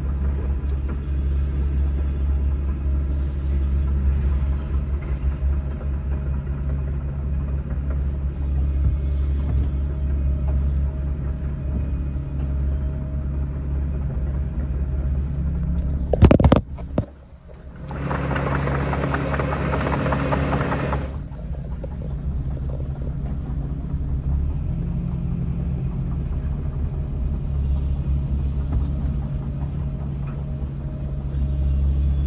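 Steady low diesel rumble of a Case crawler excavator tracking slowly, heard from inside a following vehicle. About halfway there is a sharp loud knock and a brief dip, then a few seconds of louder hissing noise.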